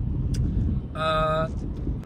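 Low steady engine and tyre rumble inside a moving car's cabin. About a second in, a short clear held tone lasts about half a second.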